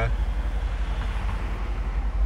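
Mercedes-AMG C63 S's 4.0-litre twin-turbo V8 idling with a steady low rumble.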